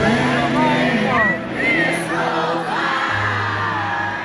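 Live band music with sustained keyboard chords and a low bass note, and a singing voice sliding up and down through runs, recorded amid an arena crowd.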